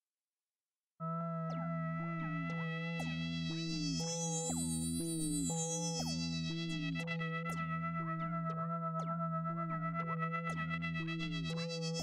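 Ambient electronic synthesizer music starts abruptly about a second in. A steady low drone sits under a repeating pattern of short notes, each sliding down in pitch, over a pulsing bass, and a bright high sweep swells and fades around the middle.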